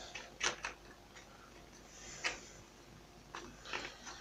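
A few light, sharp clicks and taps as buckshot pellets and a small dish are handled on a workbench, spread over about four seconds.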